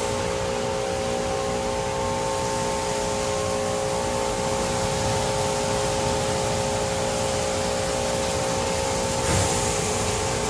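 Mark VII SoftWash XT car wash gantry running: its side brushes spin beside the car amid steady water spray and a constant motor hum. The brushes pass without touching the car. A brief surge of louder spray comes about nine seconds in.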